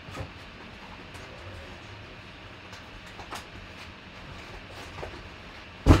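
Faint clicks and knocks of numbered card packs being sorted through in a box, then one loud thump near the end.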